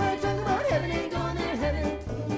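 College jazz ensemble playing an up-tempo gospel tune with a swing feel. A stepping bass line runs under held chords, and a melody line slides up and down in pitch around the middle.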